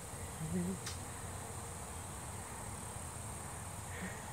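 Steady high-pitched insect drone, like crickets or cicadas, in the yard, with a brief human laugh about half a second in and a short sharp sound just under a second in.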